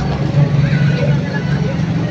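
City street traffic: a steady low hum of vehicle engines, with faint voices of people nearby.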